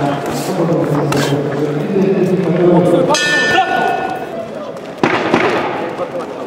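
Men's voices shouting in a large hall, with a short bell ringing about three seconds in: the boxing ring bell ending the round.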